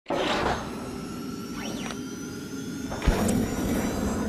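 Logo intro sound effects: a noisy whoosh that starts suddenly, crossing rising and falling sweeps about halfway through, and a deep hit about three seconds in, followed by a held tone.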